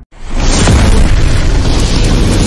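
Cinematic explosion sound effect. After a split-second cut to silence, a loud boom swells up within half a second into a dense, bass-heavy rumble that holds.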